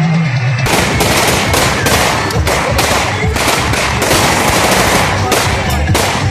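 Rapid gunfire, several shots a second in an irregular stream, beginning suddenly about a second in: celebratory firing into the air, over loud music.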